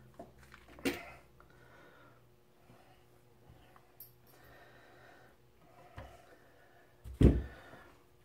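Small handling noises of hands working with small parts and tools on a wooden board: a few light clicks and rustles, a sharper click about a second in, and a loud dull thump about seven seconds in.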